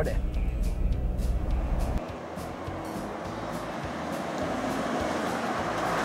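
Mitsubishi L200 pickup heard from inside its cab: a low engine and road rumble for about two seconds. It then gives way to the truck's tyre and engine noise heard from outside, growing louder as the truck approaches, with background music underneath.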